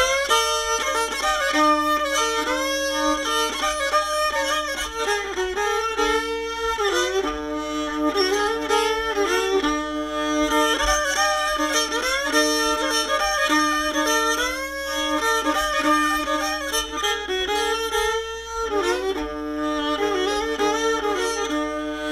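Old-time fiddle and banjo instrumental: the fiddle carries the tune in double-stops, with steady held drone notes sounding under the melody throughout.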